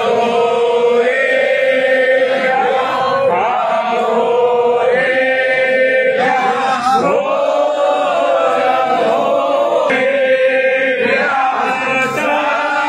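Many men chanting together in the temple, in long held phrases that rise and fall.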